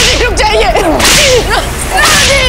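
Sharp whip-like whoosh sound effects of a TV drama's dramatic edit, one at the start and another about a second in, with wavering pitched tones beneath.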